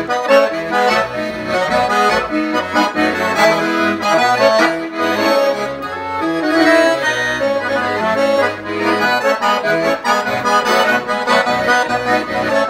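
Piano accordion played solo: a melody on the right-hand keyboard over changing bass notes and chords from the left hand.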